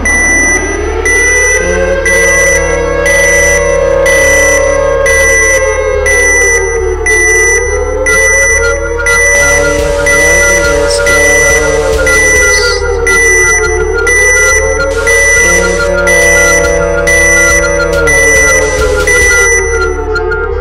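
Electronic countdown alarm soundtrack. A slow, siren-like wail rises and falls every several seconds over a high beep about once a second and a pulsing low beat.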